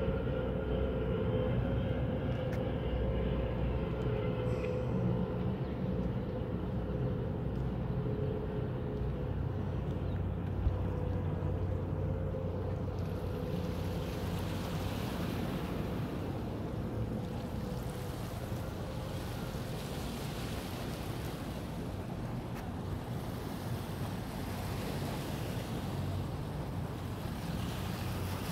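A motorboat's engine running past on the river: a steady low hum with a faint tone that fades out about twelve seconds in. After that, wind on the microphone rises over a continuing low rumble.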